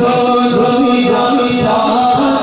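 Men's voices chanting a devotional refrain in unison over a steady held drone, backing a naat recital without instruments.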